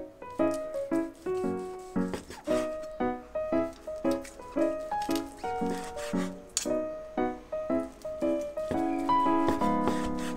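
Background music: a light, bouncy tune of short notes that each start sharply and fade quickly, in a lively rhythm.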